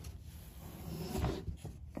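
Rustling and light scraping of hands picking up and handling a small metal part close to the microphone, growing a little louder partway through, over a faint steady low hum.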